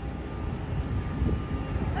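Outdoor harbour ambience: a low, uneven rumble of wind buffeting the phone's microphone, over a steady hum from the ship and port.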